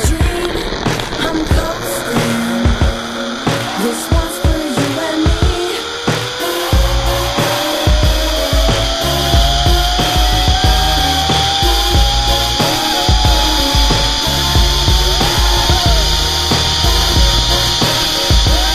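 Zipline trolley pulleys running on the steel cable, giving a whine that rises steadily in pitch for over a dozen seconds as the rider picks up speed. Music plays over it, and a low rumble joins from about a third of the way in.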